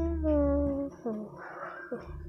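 A drawn-out, high-pitched vocal sound that sags slightly in pitch for about a second, followed by a short gliding call and a breathy sound, over a steady low electrical hum.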